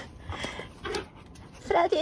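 Akita Inu dogs panting in short breathy bursts as they greet each other, then a high, sing-song human voice starts near the end.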